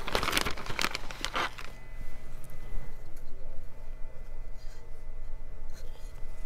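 Clear plastic parts bag crinkling and rustling as it is opened by hand, with a burst of sharp crackles in the first second and a half, then quieter handling as a printed plastic part is drawn out.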